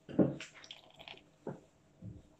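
Water trickling from a paper cup into a plastic snow-globe dome holding glitter, in uneven splashes and drips: one near the start and a short one about a second and a half in.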